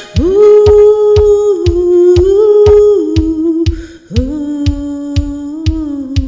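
Darkwave synth-pop music with no sung words: a sustained lead melody in two long phrases, each opening with an upward slide, the second pitched lower, over a steady beat of about two and a half hits a second.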